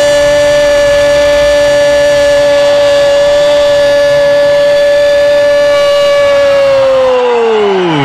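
A Brazilian radio commentator's long goal shout, held on one pitch for about seven seconds and then falling off near the end as his breath runs out.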